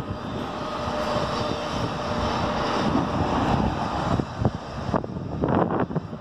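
Steady distant engine rumble, building slowly and dying away about five seconds in.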